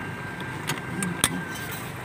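Parked passenger van's engine idling steadily, with three light, sharp clicks in the middle.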